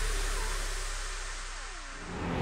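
Electronic dance music in a quiet passage between beats: a sustained deep bass under several synth tones sliding downward in pitch, the whole sound steadily getting quieter.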